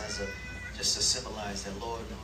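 Voices of several people speaking or praying aloud at once, with a high, crying voice in the first half-second or so.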